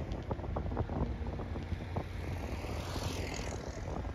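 Steady low rumble of a vehicle driving along a road, with wind noise on the microphone and scattered light knocks and rattles.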